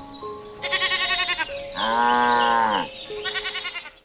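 Bleating over background music with steady held notes: a short quavering bleat about a second in, a longer, louder bleat in the middle, and another quavering bleat near the end.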